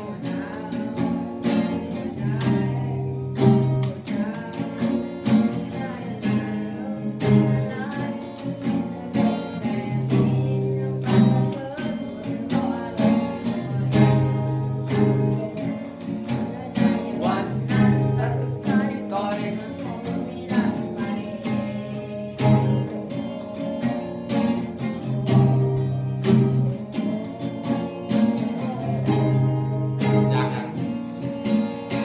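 Solo fingerstyle steel-string acoustic guitar, capoed, playing a pop tune. Thumbed bass notes carry a regular pattern under the melody, and sharp percussive slaps on the strings keep a steady beat.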